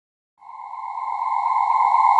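Silence between album tracks, then a steady high electronic tone that fades in about half a second in and swells louder: the intro of the next hip hop track.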